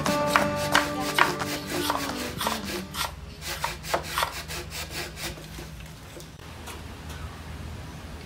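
Hand sawing through a green bamboo stalk: a steady run of about two or three strokes a second that fades away after about five seconds. Background music fades out in the first few seconds.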